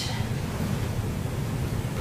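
Steady rustling of heavy woven upholstery fabric as a box cushion cover is bunched up and turned right side out.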